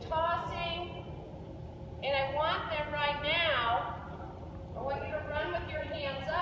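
Speech only: a woman speaking in short phrases with pauses between them.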